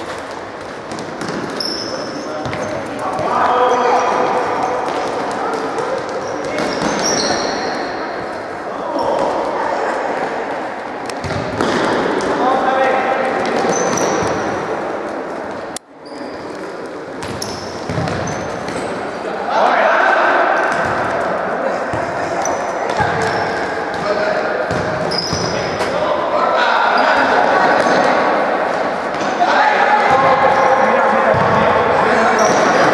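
Futsal ball being kicked and bouncing on an indoor court, with sharp knocks and short squeaks, and players' voices calling out, all echoing in a large sports hall. The sound cuts out briefly about halfway through.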